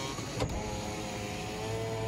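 Toyota Prius power window motor running as the glass slides through its WD-40-lubricated seals, a steady whine without squeaking. A brief tick comes about half a second in.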